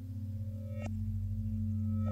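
Radiophonic-style ambient electronic music built from processed recordings of a metal lampshade: steady low drone tones. A little under a second in, a sharp metallic ping starts a new higher ringing tone, and the sound grows slowly louder.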